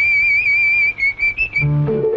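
Whistled melody in an old Tamil film song: one long high note with a slight waver, then a few short quick notes. The instrumental accompaniment comes back in near the end.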